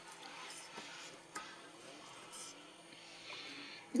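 Faint sounds of a kitchen knife slicing raw pork on a wooden cutting board, with a single sharp tap about a second and a half in.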